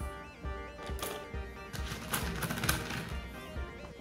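Small pebbles clattering into a plastic bottle as they are dropped in a few at a time, over background music with a steady beat.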